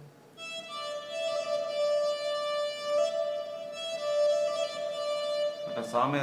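Synthesizer tone played from a MIDI keyboard: a few slow, long-held melody notes, each running into the next, with a note change about a second in and again about three seconds in.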